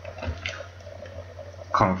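Computer keyboard keys typed, a few separate clicks, over a low steady hum.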